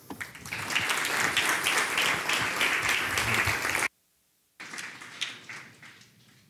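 An audience applauding steadily. The applause stops abruptly a little under four seconds in, and after a brief silence fainter applause returns and dies away.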